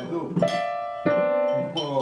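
Digital piano played by a child: two single notes struck and held, the first about half a second in and the second, a little lower, about a second in.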